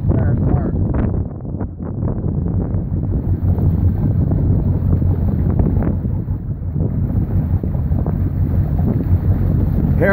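A motorboat cruising on calm water: a steady low engine drone and water along the hull, with wind buffeting the microphone.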